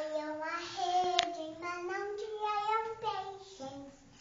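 A young girl singing a Portuguese children's worship song, in long held notes that slide between pitches. A sharp click sounds about a second in.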